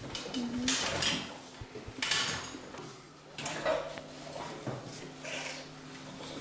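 Rustling and light clattering from a wheelchair user shifting and handling things beside a toilet, in about four separate bursts, in a small tiled bathroom.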